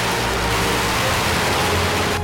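A string of firecrackers going off in one dense, unbroken crackle.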